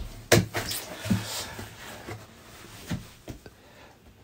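A cardboard box being handled: a sharp knock about a third of a second in, then light taps and rustles of cardboard as it is lifted and turned, fading toward the end.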